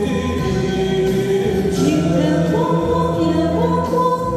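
Amplified vocal duet sung into handheld microphones over musical accompaniment. The voices hold long notes and step from pitch to pitch.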